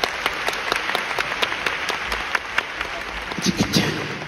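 Audience applauding: many hand claps running on steadily, with a brief voice near the end.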